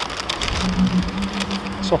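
Crackling and rustling of a McDonald's cardboard pie sleeve being handled as the pies are swapped, with a steady low hum starting about half a second in.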